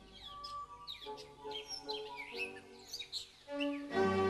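Birds chirping and twittering with many short, quick calls, over soft sustained background music that swells louder near the end.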